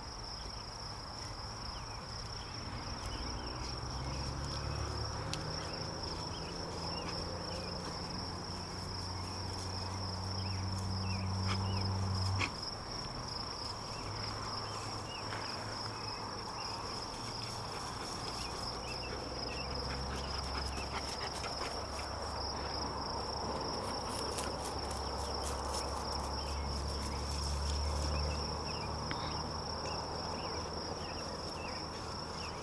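Insects chirring steadily at a high pitch, with a low motor hum underneath that builds over the first few seconds, cuts off abruptly about twelve seconds in, and comes back soon after.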